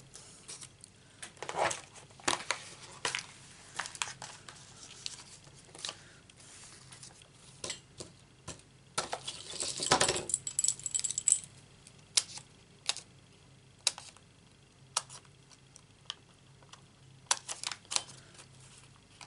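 Hands handling paper and card pieces and a sheet of foam adhesive dimensionals on a craft mat: scattered small clicks, taps and rustles, with a longer crackling rustle of the dimensionals sheet about ten seconds in.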